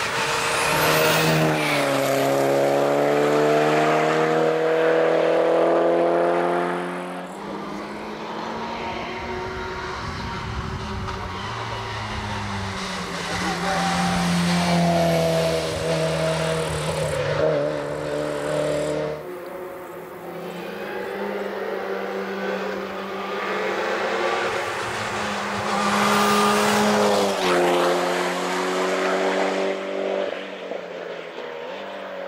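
Mitsubishi Lancer Evolution hill-climb car's turbocharged four-cylinder engine driven hard on a closed mountain road. The engine note climbs steadily through the revs and drops back between stretches, with two loud close pass-bys, one about a second in and one near the end.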